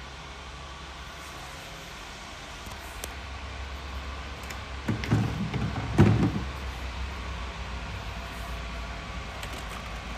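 Steady low hum under a few short knocks and rubbing sounds about five and six seconds in, as the plastic parts of a Roborock Q Revo robot vacuum dock are handled and a cover is opened.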